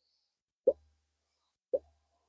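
Two short, soft pops about a second apart: lips puffing on a tobacco pipe's stem while drawing on it.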